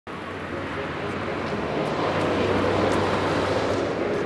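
Outdoor traffic noise: a steady rumble and hiss that swells gently toward the middle and eases off a little.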